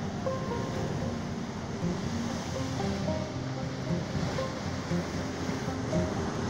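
Ocean surf washing over rocks, a steady rush, with background music of held notes laid over it.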